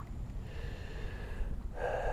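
Wind buffeting the microphone as a steady low rumble, with a short breath near the end.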